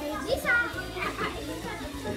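Children's voices chattering over background music.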